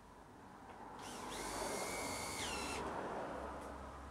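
Cordless drill working into the edge of an MDF cabinet. Its motor whines steadily for about two seconds, starting about a second in, then winds down in pitch as it stops.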